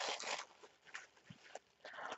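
Tape and paper wrapping on a parcel being torn open for about half a second, then faint rustles and small clicks as the package is handled.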